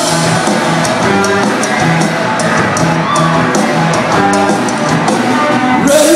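A live rock band playing through a PA: electric guitars and a drum kit with regular cymbal hits, loud and steady.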